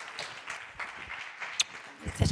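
Audience applause dying away, with a few sharp claps standing out.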